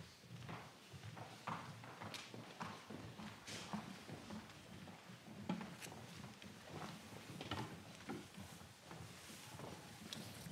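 Footsteps of several people walking in procession: irregular clicks and knocks of shoes, about two a second, with a faint rustle of people standing.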